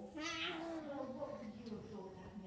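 A child's drawn-out, meow-like vocal call: a short high squeal at the start, then a wavering tone that slowly falls in pitch before it ends near the close.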